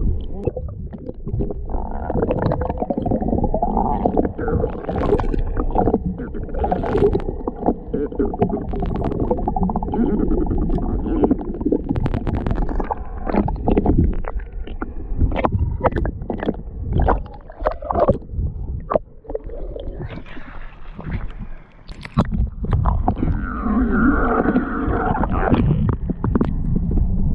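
Muffled underwater sound picked up by a camera held below the surface: water rushing and gurgling against the housing, broken by many sharp clicks and pops.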